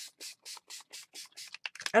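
A hand rubbing back and forth over a sheet of book paper freshly sprayed with mist ink, in quick even strokes, about four a second.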